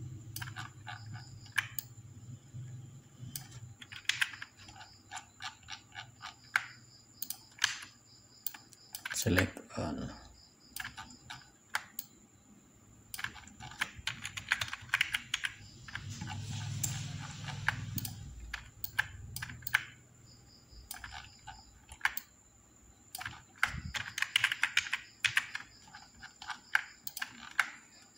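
Computer keyboard and mouse clicking in irregular runs of short sharp clicks with pauses between, busiest about halfway through and again near the end.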